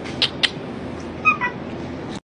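A Shiba Inu giving a short, high two-part squeak about a second and a quarter in, over a steady background hum, with a couple of sharp clicks just before.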